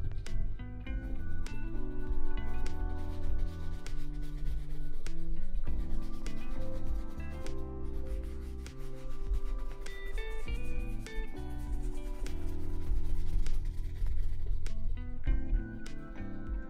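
Repeated brisk strokes of a bristle shoe brush rubbing over a leather dress shoe, brushing cream into the leather, over background music with sustained notes.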